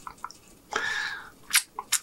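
Birria taco swirled in a bowl of consommé: a brief wet slosh about a second in, then a few drips and light ticks as the taco is lifted out of the broth.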